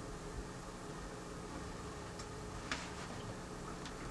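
Quiet room tone: a steady low hum and hiss, with a few faint clicks around the middle and near the end.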